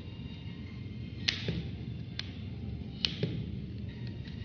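Three sharp plastic clicks, about a second apart, as the retaining clips of an Acer Z150 smartphone's back cover snap loose under a plastic pry tool.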